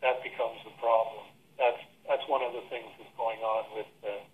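Speech only: a person talking over a telephone line, the voice thin and narrow-sounding.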